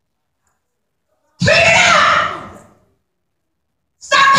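A single loud shout from a woman's voice through a microphone, starting about a second and a half in, lasting about a second and a half and trailing off, with dead silence before it.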